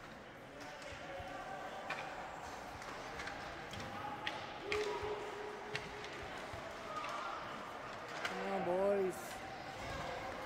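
Ice hockey play heard from the stands: sharp clacks of sticks and puck every second or so over a steady murmur of spectators. Raised voices call out about halfway and again near the end.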